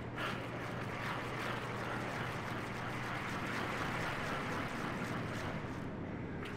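Figure skate blades gliding and carving on ice: a steady scraping hiss that swells in the middle, with a few faint clicks.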